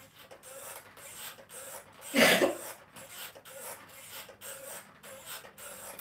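Mini stepper's pedals working in a steady rhythm, a soft rub or squeak with each step, about two or three a second. About two seconds in, one short, loud burst stands out over it.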